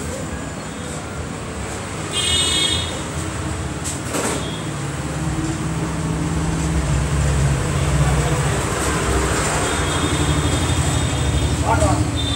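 Road traffic noise with a vehicle horn tooting briefly about two seconds in and a low engine rumble that grows louder through the middle; a single knock sounds near four seconds.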